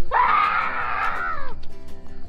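A high-pitched scream lasting about a second and a half and falling off in pitch at the end, over background music.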